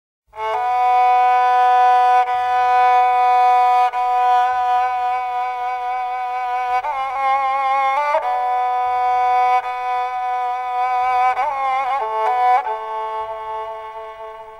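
Politiki lyra, the bowed Constantinopolitan lyra, opening the piece with long held notes broken by ornamented wavering turns, then fading out near the end.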